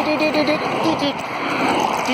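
A voice rapidly repeating one syllable at a steady pitch, about seven times a second, stops about half a second in. A rushing noise follows.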